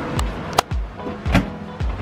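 Someone climbing a folding attic ladder: four dull thumps from steps landing on the rungs, some with sharp clicks of the ladder's frame.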